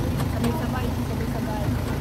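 Steady low rumble of a motor vehicle on the move, with faint talk over it.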